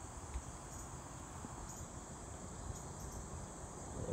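Steady, high-pitched chorus of singing insects such as crickets or katydids, with a low rumble underneath.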